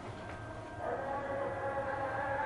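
A faint, steady tone of several pitches at once comes in about a second in and holds, over low room tone.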